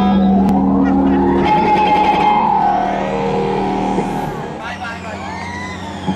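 Live electric guitar with held notes that slide downward in pitch, joined by a sweeping tone that climbs high about four seconds in and then by falling sweeps.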